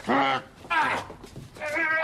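Short wordless cries and grunts from two men grappling: two brief falling exclamations in the first second, then a longer, higher-pitched cry near the end.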